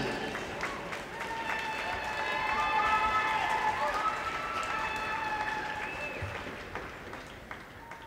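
Arena audience applauding and cheering, the applause tapering off over the last few seconds.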